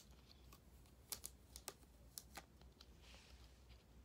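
Near silence with a few faint, sharp clicks and a soft rustle near the end: fingers and nails handling a plastic Christmas ornament while contact paper is peeled off a vinyl name decal.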